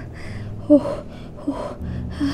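A woman in labor breathing hard through a contraction: several quick gasping breaths, some with a short, low groan.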